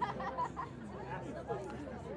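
Faint, indistinct voices chattering in the background, below the level of the commentary.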